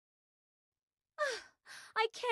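About a second of dead silence, then a woman's voice gives a short sigh that falls in pitch and trails into a breathy exhale: an exasperated sigh.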